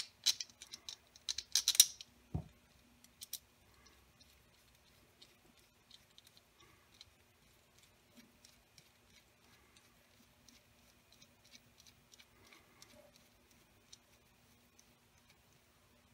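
Small clicks and taps from a screw being pushed through a 3D-printed plastic idler pulley and turned in with a precision screwdriver. A cluster of sharper clicks comes in the first two seconds, then only faint, scattered ticks, over a faint steady hum.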